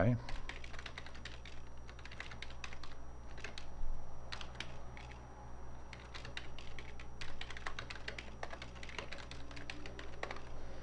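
Computer keyboard being typed on: irregular runs of keystrokes with short pauses between them.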